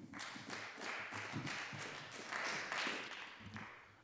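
Light applause, many hands clapping, fading out near the end.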